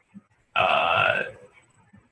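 A drawn-out, creaky hesitation 'uhh' from a man's voice, lasting just under a second.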